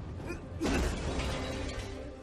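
Animated-film fight sound effects: a heavy hit just over half a second in, followed by creaking as a body lands on wooden crates, over a steady music drone.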